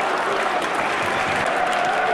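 Stadium crowd applauding and cheering a goal: a steady wash of clapping and crowd noise.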